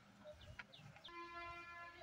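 Near silence, then from about a second in a faint, steady pitched tone held for about a second.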